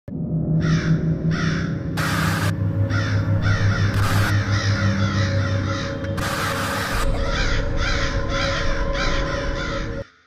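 Spooky intro soundtrack: crows cawing over and over, about two calls a second, on top of a low droning music bed, broken by three short rushes of noise. It all cuts off abruptly at the end.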